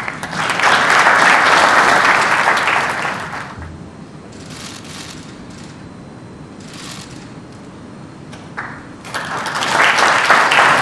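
Audience applauding for about three seconds, then dying down to a few scattered claps, with applause picking up again near the end.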